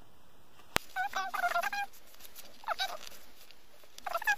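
A bird's rapid warbling calls in two bouts, a longer one about a second in and a short one near the three-second mark, after a single sharp click.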